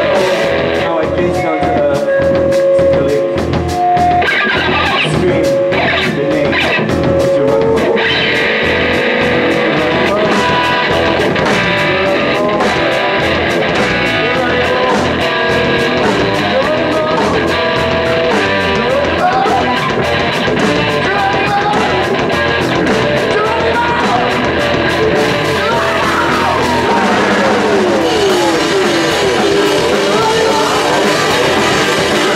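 A rock trio playing live: electric guitar, bass guitar and drums keeping a steady beat, with a sung lead vocal, in a psychedelic post-hardcore style.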